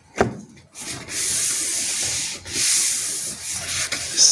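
Rustling, rubbing noise close to the microphone in two stretches: one of over a second, then a shorter swell, with a sharp click just before.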